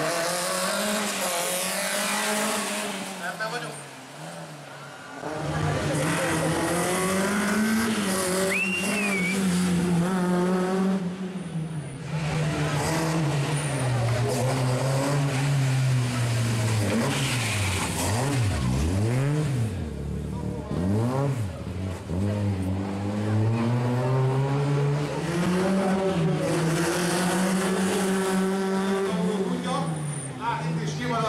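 Peugeot 306 rally car's engine revving hard, its pitch rising and falling again and again as it accelerates and brakes, with tyre squeal as the car slides through the turns. About two-thirds through, a quick run of sharp rev swoops.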